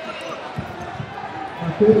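Large-hall background of scattered voices, with a few dull thumps a little past halfway, then a man shouting loudly in Portuguese near the end.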